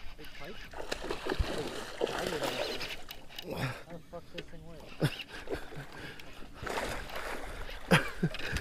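A hooked fish splashing and thrashing at the water's surface beside the boat as it is scooped into a landing net, with water sloshing and a few short knocks.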